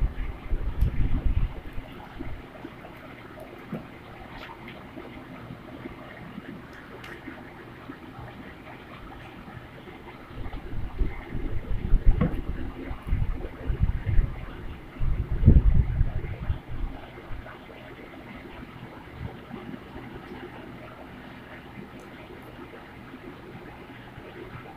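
Scissors snipping folded paper, heard as faint short clicks over a steady background hiss, with several bouts of low rumbling handling noise that are the loudest sounds.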